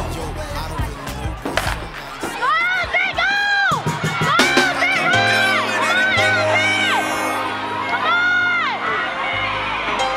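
Spectators cheering and shouting for a race, with several long, high-pitched yells, over hip-hop music playing on the loudspeakers.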